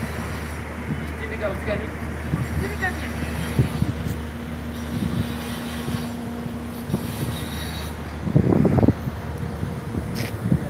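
Steady low hum of an idling vehicle engine with faint voices around it; the hum stops about eight seconds in, just as a brief louder voice is heard.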